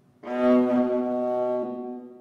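A viola plays a single low note, starting suddenly a moment in, held strongly and then beginning to fade near the end.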